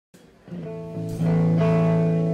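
Live country band's guitars playing the song's opening chords, coming in about half a second in; the chords change about a second in and ring on steadily.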